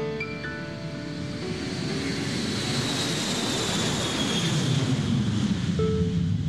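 Electronic keyboard notes die away, and a rushing noise swells up beneath them with a thin high whine that slowly falls in pitch, like a sampled jet airliner passing.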